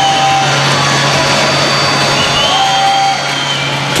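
Ice-hockey arena goal horn sounding over a cheering crowd, marking a home-team goal. A steady low tone holds throughout; a higher tone drops out about half a second in and returns briefly near the end.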